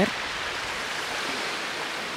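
Low waves washing in over a flat sandy shore, a steady hiss of surf.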